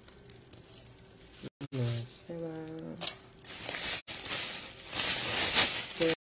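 A plastic bag rustling and crinkling as it is handled, loudest near the end, with a short stretch of a pitched voice, held tones without words, about two seconds in.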